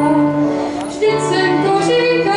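A young girl singing a Czech folk song solo into a stage microphone, in long held notes with short glides between them.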